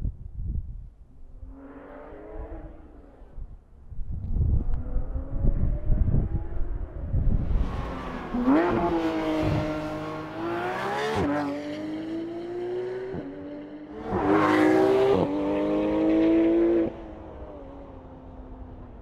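Porsche 911 GT3 RS flat-six engine running hard on the road. A low rumble builds from about four seconds in, then the engine note comes in strong about halfway through, dipping briefly a few times. It is loudest near the end and cuts off suddenly about a second before the end.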